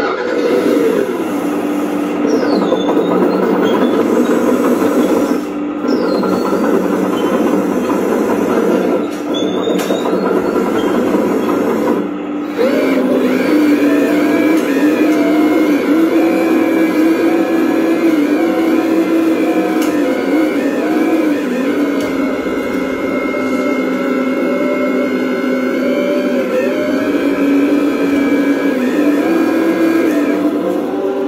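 Radio-controlled Volvo excavator model running, a steady mechanical whine with a hum beneath it whose pitch wavers as the boom and arm move. About twelve seconds in it steps up a little in pitch and level.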